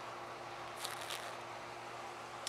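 Faint sips and swallows as a person drinks from a glass beer bottle, with a few soft mouth sounds about a second in. A low steady hum runs underneath.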